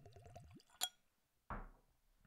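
Whiskey glugging as it is poured into a tasting glass, a quick run of rising gurgles in the first half second. A light sharp click follows, then a short breathy noise near the end.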